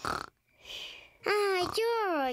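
Cartoon piglet snoring in its sleep. It starts with a short breathy snore, and from about halfway through come two voiced snores that slide down in pitch.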